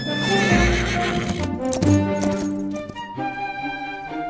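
A horse whinnying and its hooves clip-clopping, with a heavy low thud about half a second in, over orchestral background music.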